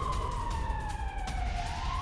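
A siren tone gliding slowly down in pitch and starting to rise again near the end, over a low rumbling background.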